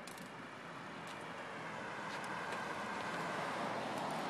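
A car passing on the street: road noise that slowly swells over a few seconds and is loudest near the end.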